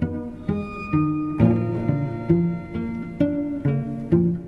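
Music: low string notes plucked about twice a second, each note starting sharply and fading.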